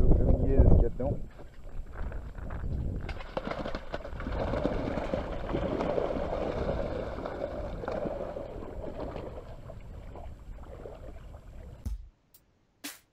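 Shallow lake water sloshing and splashing as someone wades at the lake edge with a keepnet full of fish, with wind rumbling on the microphone in the first second. The splashing swells in the middle and fades toward the end.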